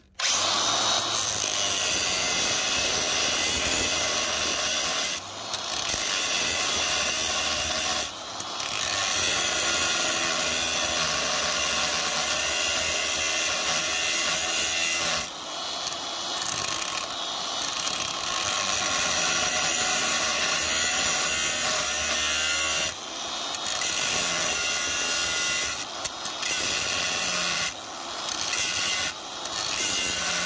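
Angle grinder with a thin cut-off wheel cutting slits into the steel rivet heads of a rusty truck frame crossmember, so the heads can be sheared off. A loud, steady high-pitched grinding that drops off briefly several times as the wheel lifts between cuts, most often near the end.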